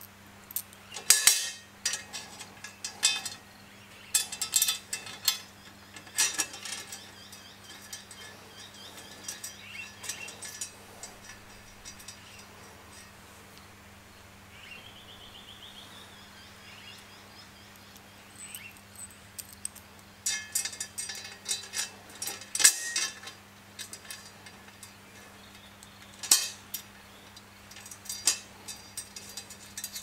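Small metal hardware clinking and clicking in scattered bursts as stainless steel bolts, brass washers and aluminium spacers are handled and fitted by hand.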